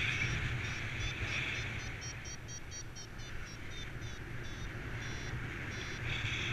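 Paraglider variometer beeping in a run of rapid short high-pitched beeps, the climb tone that signals rising air, over steady wind noise.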